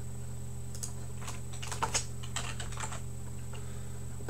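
Quick keystrokes on a computer keyboard, a short run of clicks in the middle, over a steady low hum.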